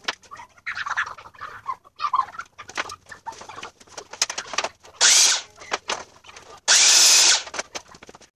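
A DeWalt sliding compound miter saw fired in two short, loud bursts cutting particle-board shelving, about five and seven seconds in, with boards knocking and clattering as they are handled between them.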